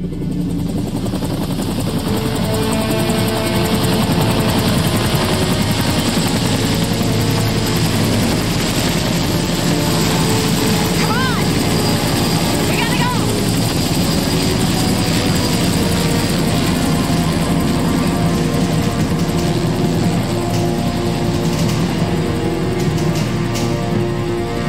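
Helicopter rotors chopping loudly, with a dramatic music score underneath.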